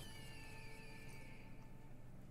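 Online video slot game's sound effect, faint: soft synthesized tones with one falling sweep over the first second and a few held notes, dying away near the end.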